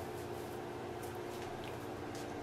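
A steady low hum of room noise, with a few faint, soft handling sounds.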